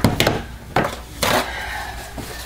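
A few irregular light knocks and clatters of a utensil and plastic containers being handled, against a faint steady hum.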